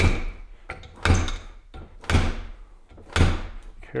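Harley Sportster 39mm fork tube yanked upward as a slide hammer, knocking against the oil seal inside the fork slider: four heavy metal knocks about a second apart. Each knock drives the old oil seal a little further out of the top of the slider.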